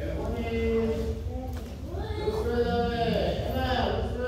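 Voices calling out in long, drawn-out calls that echo in a large hall, one held steady about half a second in and another rising and falling in the second half, over a steady low hum.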